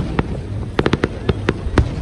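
Aerial fireworks bursting overhead: a quick run of sharp bangs and crackles, about eight or nine in two seconds.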